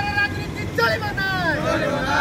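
A group of men chanting protest slogans. A held shout comes near the start, and a long falling call comes in the second half.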